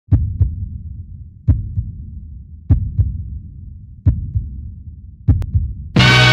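Heartbeat sound effect: five deep double thumps (lub-dub), one pair about every 1.2 seconds, each fading before the next.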